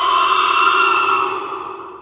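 Horror intro sound effect: one long, high-pitched shrill cry that holds and then fades away near the end.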